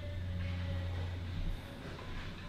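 Steady low background hum with a faint higher tone over it. This is room tone with no distinct event.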